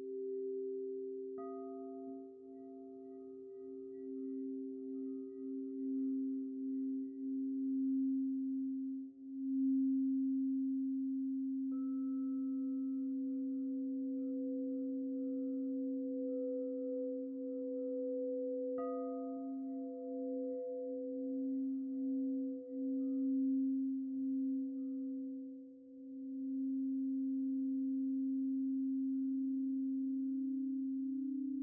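Recorded singing bowl music: several bowls ring in long, steady, overlapping tones. Fresh strikes add higher tones three times, about a second and a half in, about twelve seconds in and near nineteen seconds, each fading slowly.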